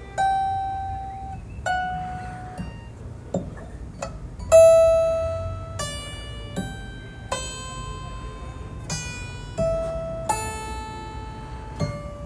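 Squier Affinity Jazzmaster electric guitar picked one note at a time: about ten single notes, each ringing and fading before the next. The loudest comes about four and a half seconds in.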